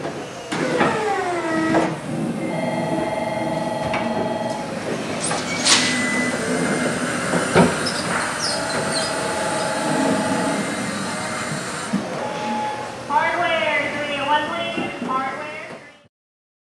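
Electric order-picker lift running and moving along the aisle, its pulsing electronic warning tone sounding in several spells of one to two seconds over a steady machine hum. Two sharp knocks stand out in the middle.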